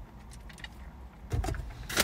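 A drink sipped through a plastic straw from a paper cup of cola, quiet over a low steady hum in the car cabin. There is a brief throat sound about one and a half seconds in, and paper starts rustling near the end.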